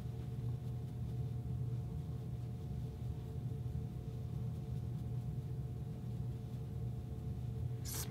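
A steady low hum with two faint, higher steady tones above it; nothing else stands out.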